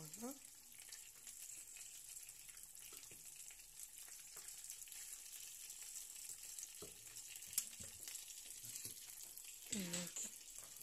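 Oil sizzling faintly and steadily in a frying pan where pieces of beef have been browned, with a single sharp knock of the wooden spoon about three-quarters of the way through.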